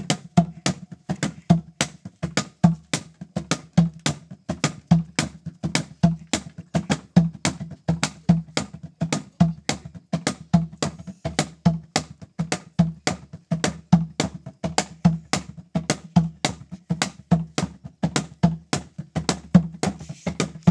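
Steady rhythmic percussion: sharp clacking strikes about three a second over a low, drum-like beat, kept at an even tempo.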